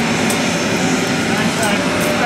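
Steady loud jet aircraft noise on an airport ramp, with people talking under it.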